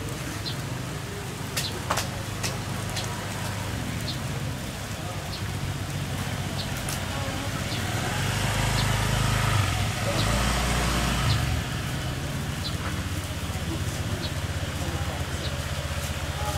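Machete blade striking a green coconut on a wooden stump: a string of sharp, irregular knocks. Underneath is the steady hum of an engine running nearby, which grows louder about halfway through and drops back a few seconds later.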